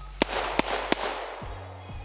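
Three quick handgun shots, sharp cracks a third of a second or so apart in the first second, fired from a non-real gun, over steady background music.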